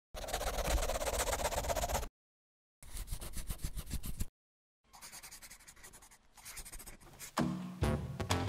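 Scribbling pen-on-paper sound effects for an animated hand-drawn logo, in three short runs of fast scratching that cut off abruptly. Music starts near the end.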